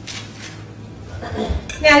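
Light clinks and taps of small objects being handled and set down, with a low bump about one and a half seconds in; a woman's voice starts just before the end.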